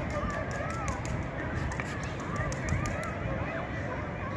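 Outdoor school-ground ambience: distant voices of many children carry across the field over a steady low rumble of wind on the microphone, with a run of faint sharp ticks during the first three seconds.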